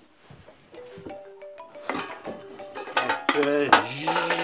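A phone ringtone plays a short melody, then a man groans loudly and long as he wakes.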